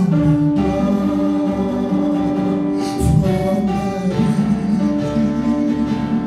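Live gospel worship music: a man sings into a microphone over instrumental accompaniment, holding long notes.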